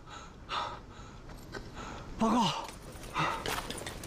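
A man out of breath after a run, panting in about three heavy gasps; the one about two seconds in is voiced, falling in pitch.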